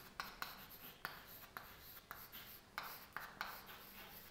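Chalk writing on a chalkboard: a faint, irregular run of short taps and scratches as the letters are formed.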